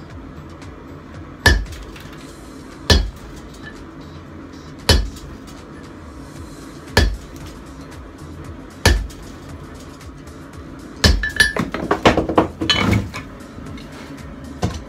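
Hand hammer striking glowing hot steel on an anvil: single heavy blows about every two seconds, five in all, then a quick flurry of strikes with ringing near the end.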